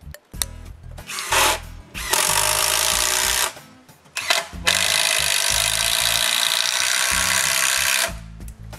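Cordless drill driving screws into wood in runs: a brief one about a second and a half in, a steady one of about a second and a half just after two seconds, and a long steady run from about halfway through to the end.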